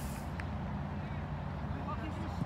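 Faint, indistinct voices of soccer players calling across the pitch over a steady low rumble.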